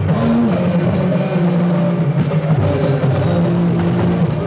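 Live band music with electric guitars, loud, with steady held notes.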